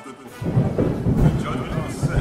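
Thunder rumbling loudly, starting about half a second in, with a voice and music faintly underneath.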